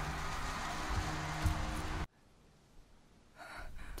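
Drama soundtrack: a dense, steady noisy wash over a faint low music bed, cutting off abruptly about two seconds in. Near silence follows, then a short breath near the end.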